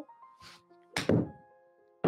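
Golf iron striking a ball off a hitting mat: one crisp impact about a second in, from a soft, easy full swing. Light background music with held chords runs underneath.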